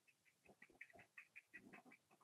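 Near silence with faint, high, short chirps repeating several times a second.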